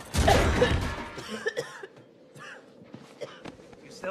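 A person coughing: a loud burst in the first second, then fainter short coughs or breaths.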